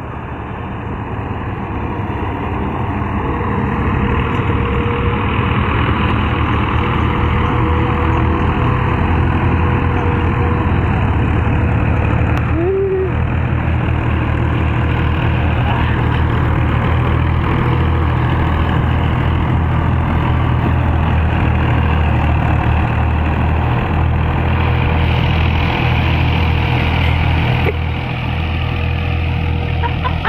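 Diesel farm tractor engines running steadily under load while pulling rear levelling blades through sandy soil. The low drone grows louder over the first few seconds, then holds steady.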